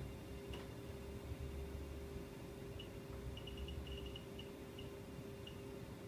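Ultrasound scanner console giving short, high-pitched electronic beeps as its keys and zoom control are worked. The beeps come as scattered singles with a quick run of them in the second half, over a faint steady hum, with one soft click about half a second in.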